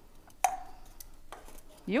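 An empty aluminum soda can knocked against a metal tabletop: one sharp metallic clink with a brief ring about half a second in, and a fainter tap about a second later.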